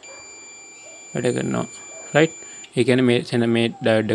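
A multimeter's buzzer sounds one steady high beep for about two and a half seconds, then cuts off suddenly, while the probes are held on the test leads.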